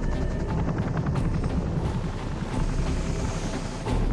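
Military helicopter in flight overhead, its main rotor beating in a fast, steady chop over a low engine drone.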